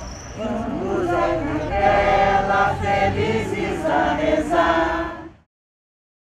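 Choir of older women singing a Christmas carol in Portuguese, on a run of held notes; the singing cuts off abruptly near the end.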